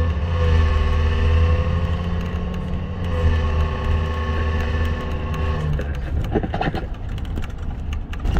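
Tour bus heard from inside the cabin while driving: a heavy low engine rumble with a whine that rises in pitch and levels off, twice. A few knocks or rattles come near the end.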